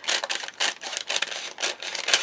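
Scissors cutting lengthwise through a strip of foam tape on wax-paper backing: a run of quick snips, several a second.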